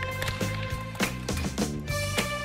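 Upbeat background music with a stepping bass line, held tones and a steady beat.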